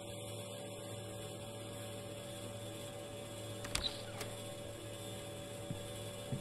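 A steady electrical hum made of several fixed tones, with two faint clicks about halfway through.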